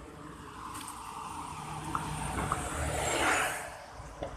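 A car passing on the street beside the sidewalk: its tyre and engine noise grows steadily, is loudest a little after three seconds in, then quickly fades.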